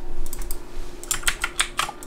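Computer keyboard keystrokes, a quick run of clicks mostly in the second half, over a faint steady hum.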